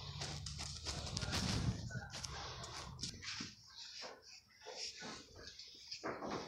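Kitten purring close to the microphone, a low steady rumble that fades out about two seconds in, followed by a series of short clicks and scuffs.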